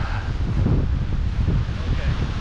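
Wind blowing across the camera microphone, a steady low rumble.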